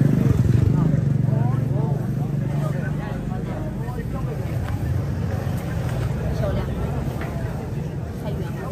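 A motor running steadily with a low, even hum, under people's talk.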